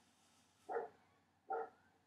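Two short, faint dog barks in the background, about a second apart.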